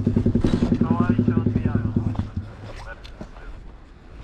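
KTM quad's engine idling with a steady, rapid, even pulse, dying away about two seconds in.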